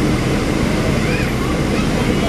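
Steady rumble of a NABI 40-SFW transit bus heard from inside the passenger cabin, with the bus standing still and its engine idling.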